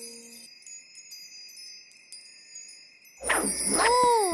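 Cartoon sparkle sound effect: high, tinkling, chime-like twinkles as the star sparkles. About three seconds in, a louder pitched swooping sound comes in, gliding up and then down.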